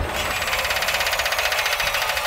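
A rapid, even mechanical rattle of about a dozen clicks a second over a low rumble.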